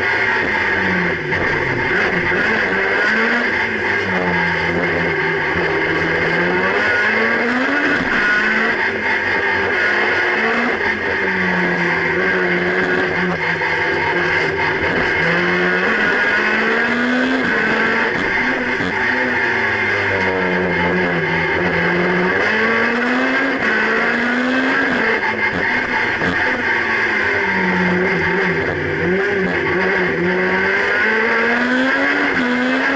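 Honda Civic slalom race car's four-cylinder engine revving hard and lifting off again and again, its pitch climbing and falling every few seconds as the car powers between the slalom gates. Heard from inside the stripped, roll-caged cabin, loud throughout.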